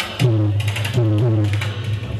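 Roots reggae played loud through a sound system: a deep, heavy bass line, with tones that bend in pitch above it.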